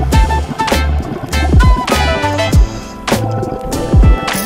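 Background music with a steady beat: drum hits about every 0.6 s over deep bass notes and held melodic tones.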